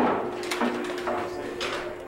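Short metallic knocks and rattles of a steel cattle chute and its weighing scale, over a steady hum.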